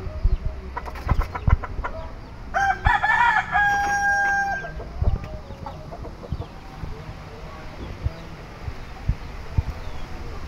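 A rooster crows once, about two and a half seconds in: a few short notes, then a long held final note. Scattered low knocks and bumps sound around it.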